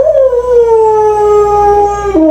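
A dog howling: one long howl that starts a little higher and settles into a slightly falling, held pitch.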